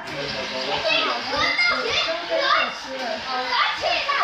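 Young children chattering and calling out over one another while they play, mixed with adult voices talking.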